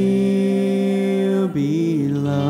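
A man singing a worship song holds one long, steady note, then drops to a lower note about one and a half seconds in.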